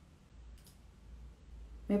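Quiet room with a low steady hum and a single faint click a little under a second in; a woman's voice starts speaking near the end.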